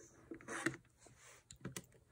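Faint clicks of keys being pressed on a Texas Instruments BA II Plus financial calculator, with a quick run of several presses near the end.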